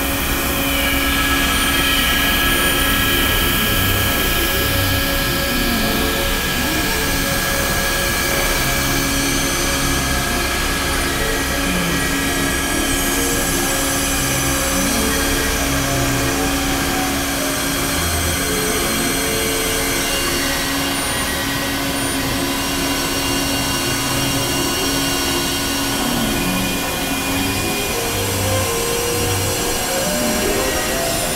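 Experimental electronic drone-and-noise music: a dense, steady wash of synthesizer noise with a long held drone tone, and short low synth notes that come and go.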